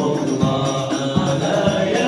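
Malay qasidah: a man chanting an Arabic selawat line over low hand-drum thumps.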